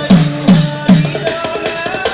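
Live folk music for a dance: a hand drum beats a steady rhythm of about two strokes a second, each stroke dropping in pitch. A held melody line plays above the drum.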